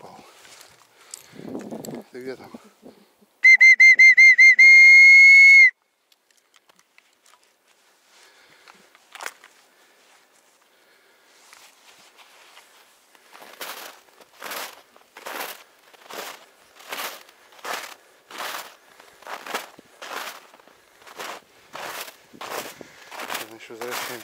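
A loud, shrill whistle blast a few seconds in, warbling at first and then held steady for about two seconds. Later come footsteps crunching through snow at a steady walking pace, about one and a half steps a second.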